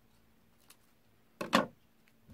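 Metal scissors set down on a tabletop: one short clatter, the loudest sound, about a second and a half in, after a faint click near the start.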